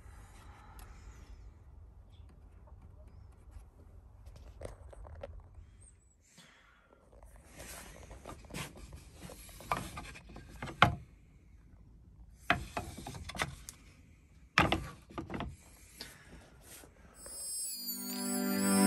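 Wooden boards being handled and knocking together, a run of sharp clacks and thuds in clusters with quiet gaps between. Music fades in near the end.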